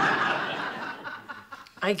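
Studio audience laughing, loudest at the start and dying away over about a second and a half.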